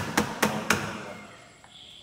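A metal container knocked several times against a stainless-steel vessel, about four sharp knocks a second, to shake out what it holds. The knocks stop within the first second and the ringing fades.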